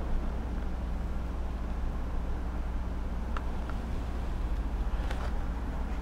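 Steady low electrical hum of workshop equipment, with a few faint clicks about halfway through and near the end.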